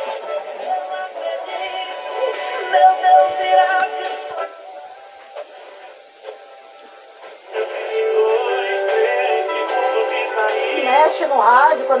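Music with a singing voice playing in the background. It drops much quieter for about three seconds in the middle, then comes back at full level.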